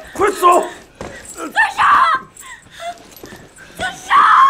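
Distressed shouting and crying: a man's urgent shout, then a woman's high, loud cry about two seconds in, with weaker sobbing voice sounds after it.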